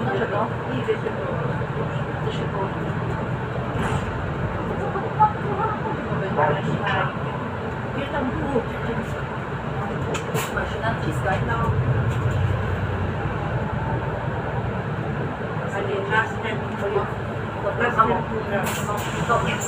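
Interior running noise of a Solaris Urbino 8.9 city bus on the move: a steady low engine and road drone that grows louder for a couple of seconds around the middle, with indistinct voices in the cabin.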